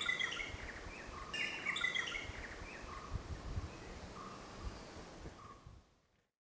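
Birds chirping and calling over a faint outdoor background hiss, fading out near the end.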